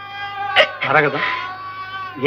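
A voice making one drawn-out, wavering, strained sound about a second in, over steady sustained background music.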